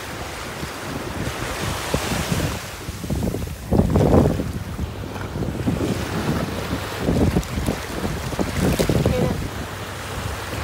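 Small waves washing up the shore in shallow surf, with wind rumbling on the microphone in repeated gusts and hands splashing in the shallow water.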